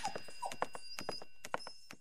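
Cartoon footstep sound effects of animated children and a puppy walking: a run of quick, light taps with two brief squeaks within the first half-second, fading down near the end.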